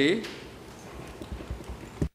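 A man's voice speaking Khmer into a microphone ends a word with a falling pitch. Then come quiet room noise and a few faint, irregular clicks, the clearest near the end.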